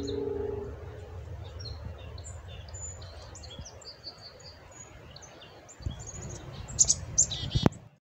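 Black-capped chickadees giving short, high chirps on and off, over a low steady hum that fades out about a second in. Near the end come loud rustling noises and a sharp knock.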